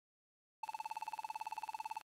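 An electronic buzzing tone, pulsing fast at about fifteen pulses a second, starts about half a second in and cuts off suddenly at the end: a computer-terminal sound effect, like a telephone ringer.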